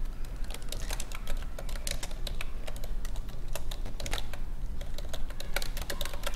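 Computer keyboard typing: a run of quick, irregular keystrokes as a title of a couple of words is typed in.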